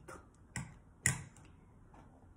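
Two short, sharp clicks or taps about half a second apart, from objects being handled at a table.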